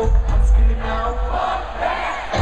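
Live band music loud through a large venue's PA, with heavy bass and a melody line, and the crowd's voices mixed in.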